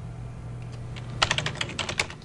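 Typing on a computer keyboard: a quick run of key clicks starting a little over a second in, over a faint low steady hum.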